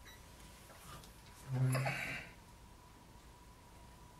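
A brief wordless vocal sound from the man, a short grunt-like murmur about one and a half seconds in, over quiet room tone with a faint steady high tone.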